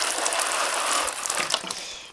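Garden hose spray nozzle showering water onto compost in small plastic seedling pots: a steady hiss of spray that fades and stops near the end. It is a light watering of freshly sown seeds.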